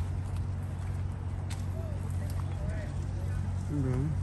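A steady low rumble runs underneath, with faint distant voices and a few light clicks. A nearby voice starts right at the end.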